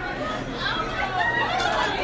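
Indistinct chatter of several people's voices, with no clear words.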